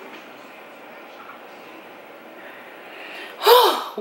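Faint steady room hiss, then near the end a woman's loud voiced exclamation that rises and falls in pitch, like a relieved sigh.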